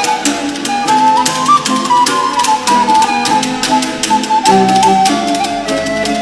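Renaissance ensemble music: a wooden recorder plays a melody over lower accompaniment and a steady percussion beat.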